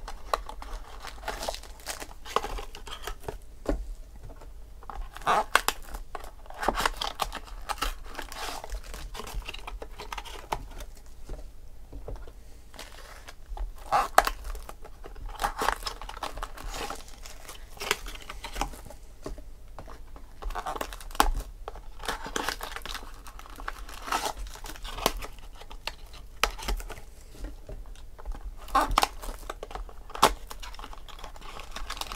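Clear plastic wrapping on a 2016 Topps Triple Threads baseball card pack crinkling and tearing as it is peeled off by hand, in irregular bursts of rustling.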